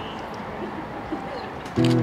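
Quiet acoustic guitar accompaniment playing softly under the stage scene, with a voice coming back in near the end.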